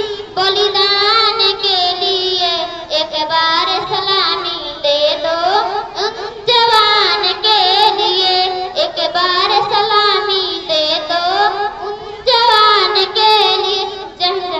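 A girl singing a patriotic song solo into a microphone, with no instrument audible, in long phrases with short breaths between them.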